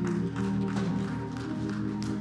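An organ holding sustained chords, shifting notes once or twice.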